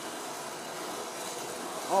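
Steady hissing rush of a fire tornado: burning fuel spinning inside a rotating wire-mesh cylinder, growing slightly louder as the flame draws up into a whirl.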